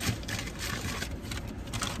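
Crunchy chewing of a Korean corn dog coated in Flamin' Hot Cheetos crumbs, a run of crackly crunches, over the low steady hum of the car idling.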